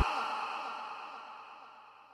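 The echo of a song with a screamed male vocal dying away after the music cuts off abruptly, fading steadily toward silence.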